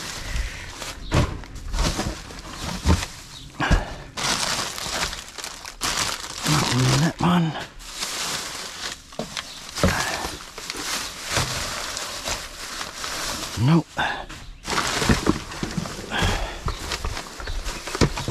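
Plastic rubbish bags rustling and crinkling as gloved hands lift them and pull them open, in irregular bursts, with a few brief murmured voice sounds.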